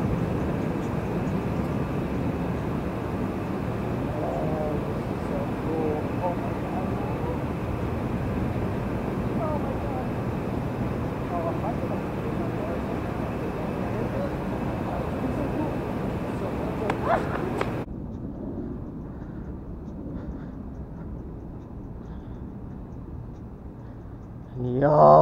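Steady rushing outdoor noise on a street, with a faint distant voice calling out now and then. Near two-thirds of the way through there is a short knock, then the sound cuts to a quieter, duller hiss.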